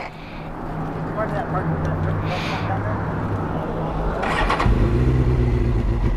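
Suzuki GSX-R750 inline-four sport bike idling. About four and a half seconds in, its note steps up slightly and grows louder.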